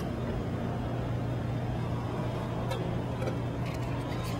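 Steady low hum and rumble of background noise, with a few light clicks and scrapes near the end.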